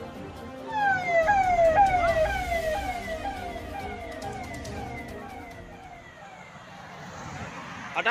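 Vehicle siren of a VIP convoy's escort sounding a fast repeating pattern of falling sweeps, a little over two a second. It is loudest about a second in and fades away by the middle.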